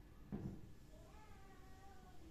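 Whiteboard marker squeaking as a line is drawn across the board: a soft knock about a third of a second in, then a faint, wavering, high squeal for about the last second.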